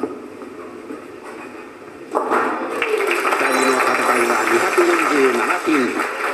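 A bowling ball crashing into the pins about two seconds in, followed at once by a crowd cheering and applauding, heard through a television's speaker.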